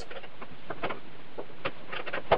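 Pliers gripping and turning a microwave oven transformer's mounting bolt on the oven's sheet-metal base. The sound is small, irregular metallic clicks and scrapes.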